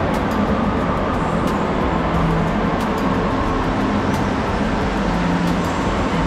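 Steady, even background noise with a low hum and a few faint clicks: the ambience of a large indoor exhibition hall.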